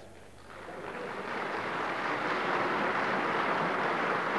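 Applause from parliament members in the chamber. It swells up about half a second in and carries on steadily.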